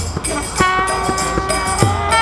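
Kirtan music: a harmonium holds a sustained reedy chord, while a mridanga drum gives deep bass strokes, one at the start and one near the end, and karatalas hand cymbals strike in a steady rhythm.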